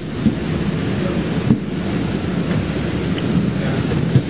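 A steady low rumbling noise, about as loud as the speech around it.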